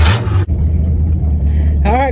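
Small-block Chevy 350 V8 in a Blazer, running through short open exhaust pipes that stick up out of the hood. It starts with a loud, full-range rush; about half a second in this cuts off abruptly to a steady low rumble, heard from inside the cab.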